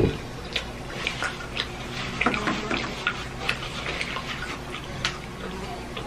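Close-miked eating mouth sounds: a string of short wet clicks and smacks from chewing and the lips, with a short denser patch about two seconds in.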